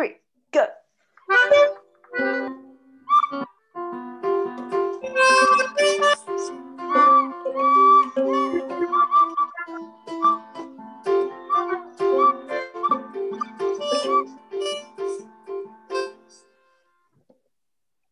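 Several instruments, among them a melodica, an accordion, a trumpet and a recorder, played all at once over a video call: a jumble of overlapping held notes that builds up after a few scattered notes and stops together about 16 seconds in.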